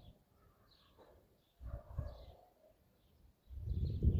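Distant thunder rumbling low in two rolls, one about a second and a half in and a louder one building near the end. Small birds chirp in short high notes over it.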